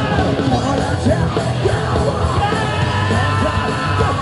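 A punk band playing live and loud, with electric guitars, drums and a man's vocals over them, heard from within the crowd.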